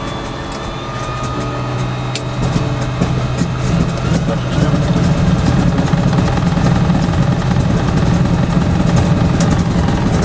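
Beech 18 aircraft engine and propeller running, heard from inside the cabin. It grows louder over the first few seconds, then runs steadily.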